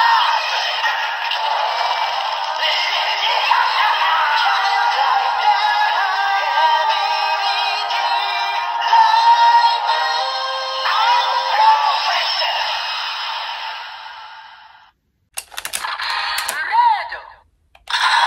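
The DX Perfect Wing Vistamp toy's small speaker plays its looping standby song with synthesized singing, thin and without bass. It fades out about fifteen seconds in, followed by a brief burst of clicks and a short electronic sound.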